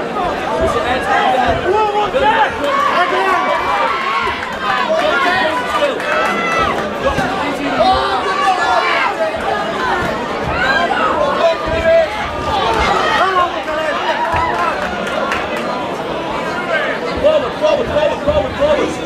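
Ringside crowd of spectators, many voices shouting and chattering over one another, loud and continuous.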